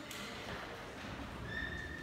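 Footsteps on a hard stone floor in a large echoing hall, with the hum of the room behind them; near the end a brief high thin tone sounds for about half a second.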